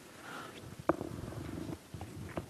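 A quiet lull with a faint low murmur, and a single sharp click about a second in.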